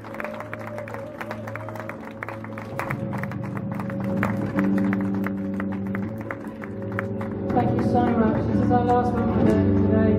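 Live electronic post-punk music: held synthesiser tones over a fast ticking drum-machine beat and a bass guitar line, growing louder about three seconds in and again near the end, where a sung voice comes in.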